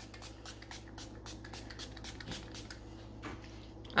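Pump-mist bottle of facial setting spray spritzed repeatedly in quick, faint, short hisses, the spritzes thinning out in the last second or two.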